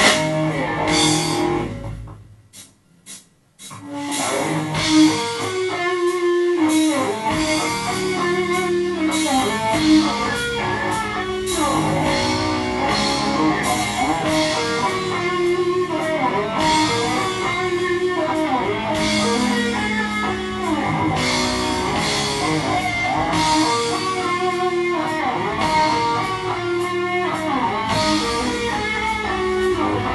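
Heavy metal band playing live: electric guitars, bass guitar and drum kit, instrumental with no singing. About two seconds in the music drops nearly away for a moment, broken by a few short hits, then the full band comes back in.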